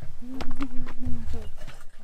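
A voice singing long, steady held notes that end in a falling slide, with a few sharp knocks and low bumps underneath.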